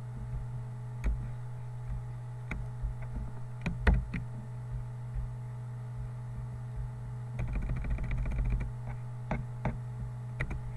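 Scattered clicks of a computer mouse and keyboard: a few single clicks, then a quick run of clicks a little past the middle, over a steady low electrical hum.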